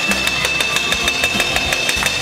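Kothu parotta being chopped: steel blades striking the iron griddle rapidly and evenly, about six clangs a second, over a steady metallic ring.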